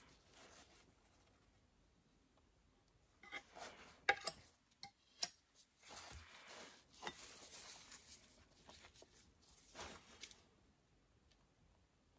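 Faint handling sounds at a painting table: a few light clicks and taps, then several seconds of soft rubbing as the wooden lazy Susan is turned and the palette knife is handled.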